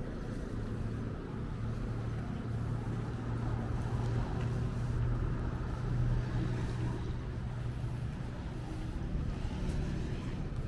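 A motor vehicle's engine running close by in street traffic, a steady low hum that grows a little louder through the middle and then eases off.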